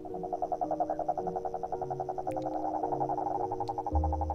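Male common toads calling in chorus: a continuous, rapidly pulsed croaking trill, over soft sustained music notes.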